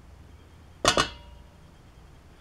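Two quick metallic knocks of a tin can against the rim of a stainless steel mixing bowl, a fraction of a second apart, each with a short ring from the bowl.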